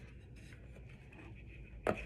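Faint scraping and rubbing of a spoon stirring thick homemade slime in a bowl, with one short sharp sound near the end.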